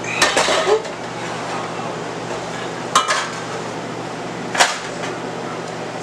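Water at a boil in a large stainless steel stockpot, a steady hiss, broken by three sharp metal clinks against the pot: one near the start, one about three seconds in and one near the end.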